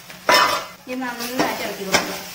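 A steel spoon clanging and scraping against a steel pan while stirring shredded chicken: a loud ringing clang about a quarter second in, a ringing scrape in the middle, and another sharp clang near the end.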